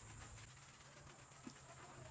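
Near silence: faint outdoor background with a low steady hum and a single soft tick about one and a half seconds in.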